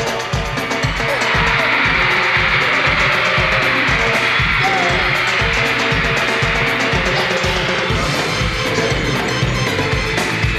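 Live band playing an up-tempo dance-pop section with a steady drum beat, mostly without lead vocals.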